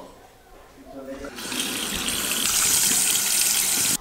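Bathroom faucet turned on about a second and a half in, water running steadily into the sink.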